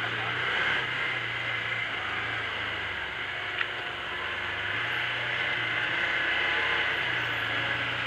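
Can-Am Commander 800 side-by-side's V-twin engine running at a steady low drone at trail speed, its pitch stepping slightly up and down, under a steady hiss of wind and trail noise. A single click comes about three and a half seconds in.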